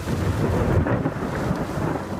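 Thunder rumbling, a deep, continuous rumble.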